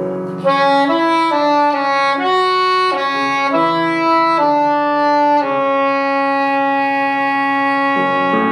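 Soprano saxophone playing a melodic line of short stepping notes, then holding one long sustained note from about five and a half seconds in.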